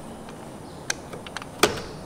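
A few light clicks and ticks, the loudest about one and a half seconds in, as the cable-steering pulley is pushed back onto the splined shaft inside a Minn Kota trolling motor head.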